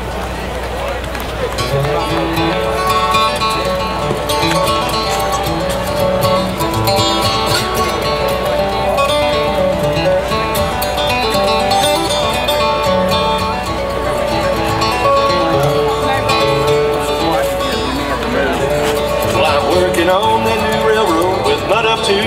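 Solo acoustic guitar played through a stage PA: a bluegrass instrumental intro leading into a sung song, picked notes and strummed chords running continuously.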